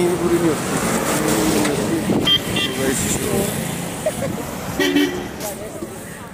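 Short vehicle horn toots, several times, over road traffic noise with voices in the background.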